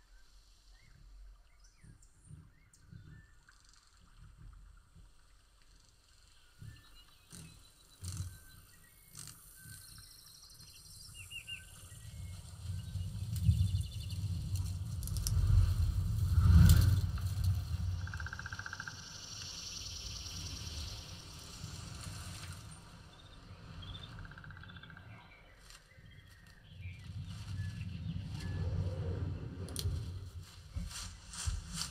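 Denon DHT-S218 soundbar with a Polk Audio MXT12 subwoofer playing a surround demo soundtrack, recorded in the room: forest ambience with birds chirping over deep bass swells from the subwoofer. The sound builds to a loud sweep a little past halfway, falls back, then swells again near the end.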